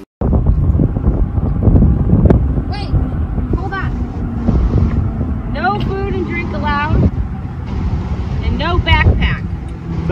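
Wind rumbling on the microphone, with people's voices talking over it.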